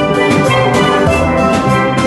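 Steel pan band playing, many chrome steelpans striking ringing notes together over a drum beat.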